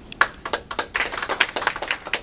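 Audience applause: a few scattered hand claps shortly after the start, then many hands clapping together.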